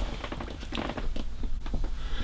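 Irregular small clicks and rustling, with a low hum underneath.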